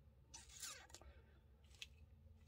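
Near silence with faint handling rustles and one light click near the end, as a silver coin in a clear plastic capsule is turned over in the hand.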